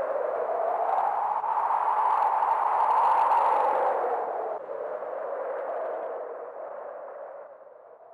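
Ambient drone closing a psychedelic rock track: a hazy, swirling wash of sound with no clear notes or beat. It swells, then fades away over the last few seconds.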